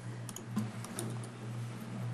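Faint, scattered clicks of typing on a computer keyboard over the steady low hum of the room's sound system.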